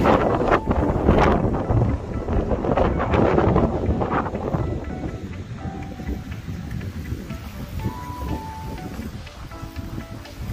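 Background music, louder and denser for the first four seconds or so, then quieter for the rest.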